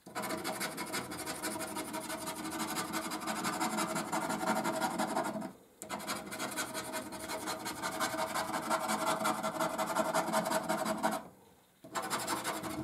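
A coin scraping the silver latex coating off a paper scratchcard in quick, fine strokes. It runs in two long stretches, broken by a short pause near the middle, and stops just before the end.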